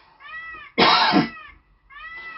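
A short, loud cough-like burst of breath from the singer about a second in, during a pause between sung phrases, with faint high rising-and-falling calls just before it.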